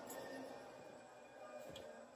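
Very quiet room tone, with no distinct sound.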